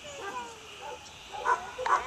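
A dog barks twice in quick succession, about one and a half seconds in.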